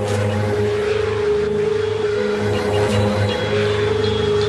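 Deathstep/dubstep electronic music, instrumental with no vocals: a held synth tone over a pulsing, distorted bass line at a steady, loud level.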